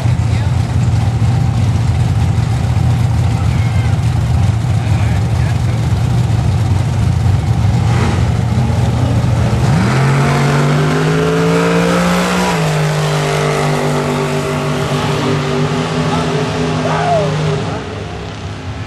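Ford Mustang GT's V8 on a drag-strip pass: a steady engine drone at first, then about ten seconds in the engine revs up as the car launches, with a gear shift a couple of seconds later before it pulls steadily down the strip and fades near the end.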